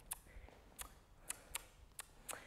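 Near silence broken by about five faint, sharp clicks, roughly half a second apart.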